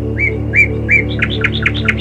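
Songbird chirping over soft ambient music with a steady low drone: three short separate chirps, then a quicker run of about six chirps in the second second.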